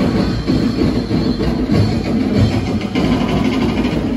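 Loud festival percussion music: a drum ensemble keeping up a steady, driving beat for a street dance.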